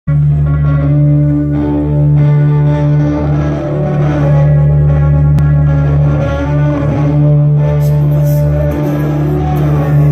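Rock band playing live: the instrumental opening of the song, electric guitar over heavy sustained low bass notes, loud and boomy as heard from the crowd.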